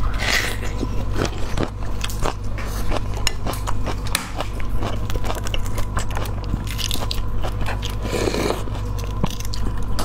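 Close-miked eating: biting and chewing, with small crunches and clicks throughout. Later on, the crackle of a boiled egg's shell being cracked and peeled by hand joins in.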